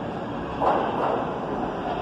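R46 subway train approaching through the station with a steady rumble. A brief, sharp, loud burst comes about half a second in, and a fainter one just after.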